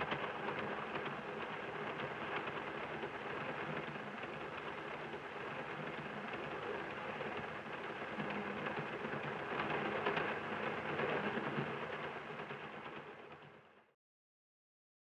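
Steam train running, its steady rumble and clatter heard from inside a passenger carriage. The sound fades out near the end.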